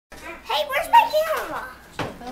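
Indistinct voices talking, a child's among them.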